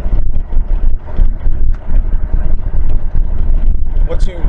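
Road and wind noise inside a moving car, a loud steady low rumble with the wind buffeting the microphone.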